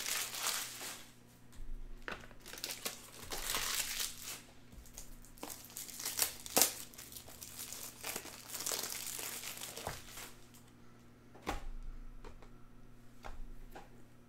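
Foil wrappers of Panini Donruss Optic baseball card packs crinkling and tearing as the packs are opened by hand. The crinkling comes in irregular bursts with a few short, sharp clicks.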